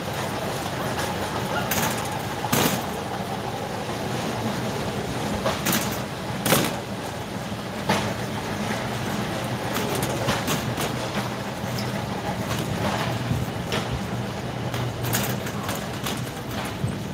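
Metal wire shopping cart rolling over a concrete floor: a steady rumble with the basket giving a sharp rattle or clank every few seconds.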